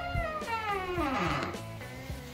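Old wooden door swinging open on squeaky hinges: one long squeak that slides down in pitch about halfway through and dies away.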